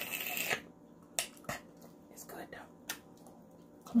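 Eating sounds: a short hiss of breath through clenched teeth at the start, then scattered mouth clicks and smacks of chewing.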